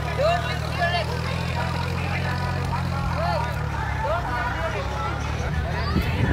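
Voices calling and chattering outdoors over a steady low engine hum, which eases off about halfway through.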